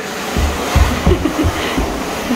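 A large cardboard box is pushed along a carpeted floor, making a continuous scraping noise with several low thumps.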